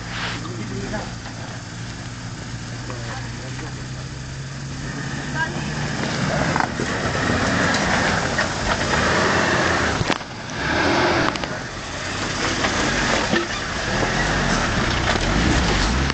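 Suzuki 4x4's engine pulling steadily at low speed as it crawls over rock, growing louder from about six seconds in as it works harder, with the tyres grinding and scrabbling over rock and dirt; the noise drops briefly near the middle, then builds again.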